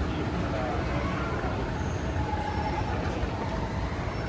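Schindler 9300AE escalator running at its top landing, a steady mechanical rumble, with indistinct voices in the background.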